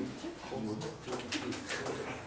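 Quiet, indistinct voices talking in low tones, with no clear words: students answering or discussing in a small classroom.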